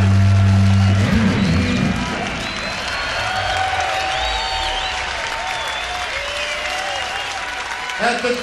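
The band's last held chord, with a deep steady bass note, cuts off about a second in and gives way to a large crowd applauding and cheering.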